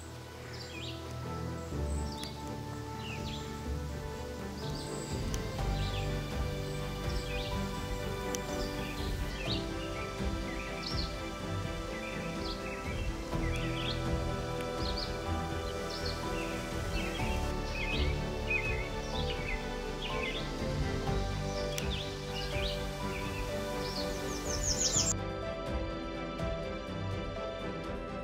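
Soft background music with sustained notes, and small birds chirping and singing over it throughout.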